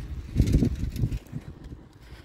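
Wind buffeting the microphone in low, uneven gusts while a bicycle is ridden over asphalt. The gusts are loudest about half a second in and again near one second, then die down.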